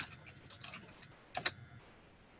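Faint typing on a computer keyboard: a few light keystrokes, then a louder pair of key presses about one and a half seconds in.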